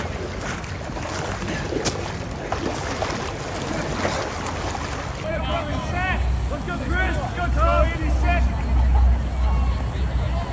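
Water splashing and sloshing as a soldier crawls on his belly through a muddy water pit. Then, in a new shot, distant shouting voices over loud wind buffeting the microphone.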